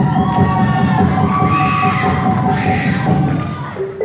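Live silat accompaniment music: a wind instrument holds one long steady note while a second line rises and falls above it, over a dense low rhythm. The low part thins out near the end.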